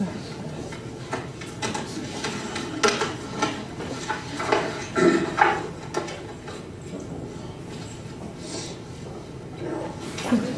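Indistinct low voices with scattered light clicks and knocks, a little louder around three and five seconds in.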